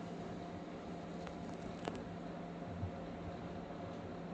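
Steady low electrical hum and hiss of room tone, with a couple of faint clicks about a second and a half in and just before the two-second mark.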